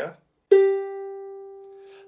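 A single note plucked with the index finger on a ukulele's E string, fretted in a G chord shape, about half a second in. It rings clearly and slowly fades away.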